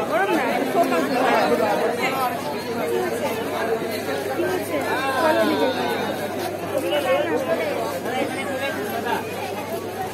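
People talking over one another, overlapping chatter from several voices.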